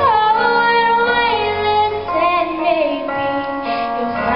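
A woman singing a slow solo song into a microphone, holding long notes that slide in pitch, with musical accompaniment underneath.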